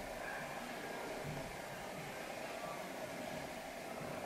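Quiet room tone: a faint, steady hiss with no distinct sounds.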